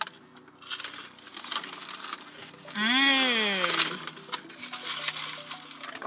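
Crunching bites of a crispy Taco Bell cinnamon twist, with a hummed "mmm" about three seconds in that lasts about a second and rises then falls in pitch.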